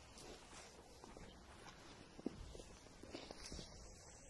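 Near silence, with faint scattered rustles and soft taps of two dogs moving about on grass; one slightly louder tap comes a little over two seconds in.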